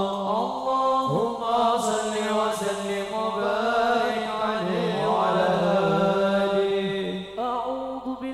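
Male voices singing a sholawat chant through a PA in long, slowly bending melismatic lines, with no drums.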